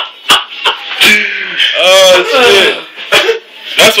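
A man coughing and sputtering after a spoonful of dry ground cinnamon, with a few sharp coughs at first, then voices crying out and laughing.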